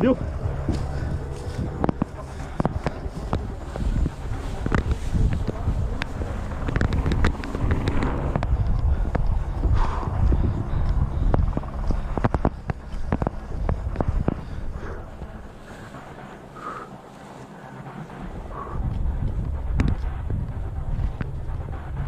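Body-worn camera audio of an officer moving on foot through tall grass and an orchard: heavy rumble of wind and handling on the microphone, with rustling and many short knocks from steps and brush. It eases off for a couple of seconds after the middle.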